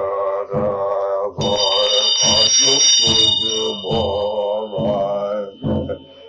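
A low male voice chants a Tibetan liturgy in a steady, rhythmic recitation. About one and a half seconds in, a Tibetan ritual hand bell rings with several high, steady tones; most fade after a couple of seconds and one tone lingers on.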